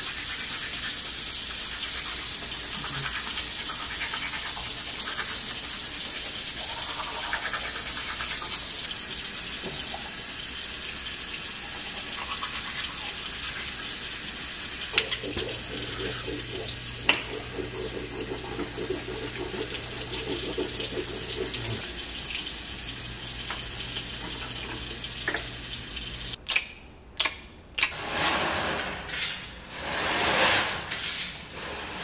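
Bathroom sink tap running steadily into the basin while teeth are brushed, with a low steady hum joining past the middle. The running water stops abruptly near the end, followed by a few short knocks.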